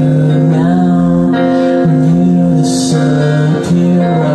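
Acoustic guitar and violin playing together live, a melody of long held notes that slide from one pitch to the next.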